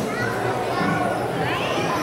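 Chatter of many overlapping children's and adults' voices in a large hall, at a steady level, with one higher child's voice rising above it near the end.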